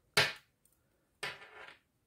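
Two knocks from knitting needles being handled over a hard worktop: a sharp, loud one just after the start and a softer, longer scrape-like one a little past one second in.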